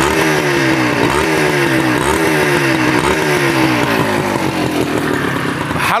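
Honda H100's small two-stroke single-cylinder engine being revved on its stand, the throttle blipped about once a second so that the pitch jumps up and sags back each time. The seller says it sounds good.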